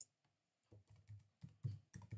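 Computer keyboard keys clicking as a place name is typed into a search box: one click at the start, then a quick run of keystrokes from under a second in.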